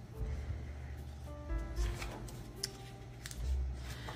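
Soft background music with held, stepping notes, under the rustle and light bumps of a small colouring book's pages being turned and pressed flat.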